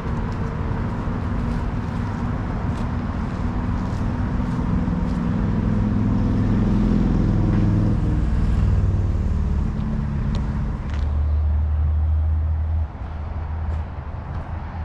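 Low engine rumble of passing motor traffic, its pitch shifting as it goes, loudest around the middle and dropping off sharply near the end.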